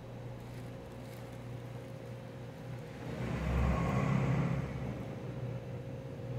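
Steady low room hum; about three seconds in, a low rumble swells up and fades away again over about two seconds.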